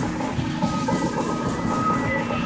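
Experimental electronic noise music: a dense, steady wall of crackling noise and drone. A thin high tone comes in about half a second in and holds.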